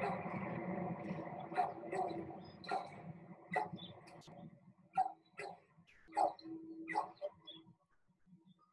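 A dog barking in short, separate barks, about eight spread irregularly over several seconds, over a background noise that fades out during the first half.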